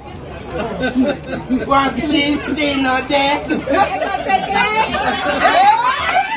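Several people talking over each other and laughing around a table, the voices growing louder and more excited near the end.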